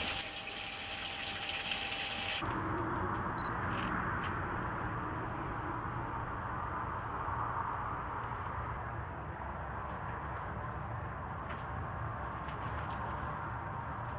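Electric centrifugal water pump running with water spraying hard from a hose fitting; after about two seconds this cuts to a steadier, duller hiss with a low hum underneath.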